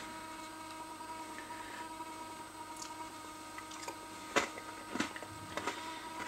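Faint chewing of a mouthful of yogurt mixed with small crunchy cereal pieces, with a few sharp clicks about four and a half and five seconds in.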